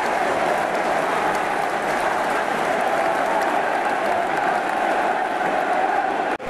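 Stadium crowd applauding, a steady wash of clapping with many voices mixed in.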